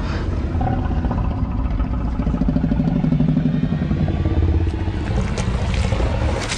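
Film sound effect of a large dinosaur's deep, rough growl over a low rumble, loudest in the middle.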